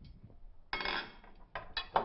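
A metal spoon scraping and clinking against a ceramic bowl: a longer scrape a little under a second in, then a few quick clinks near the end.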